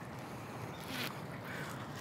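Steady, fairly quiet wash of water and wind beside a small boat, with a faint brief swish about a second in.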